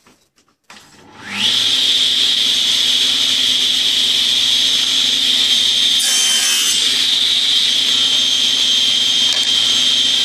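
Table saw switched on: its motor and blade spin up with a rising whine about a second in, then run steadily at full speed. Around six seconds in the blade briefly cuts through wood as the crosscut sled is pushed through.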